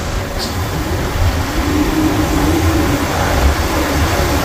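Motorcycle riding at road speed: a steady engine hum under heavy wind buffeting on the microphone.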